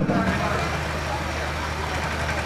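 Steady outdoor background din: a low, even hum with faint, indistinct voices in the mix.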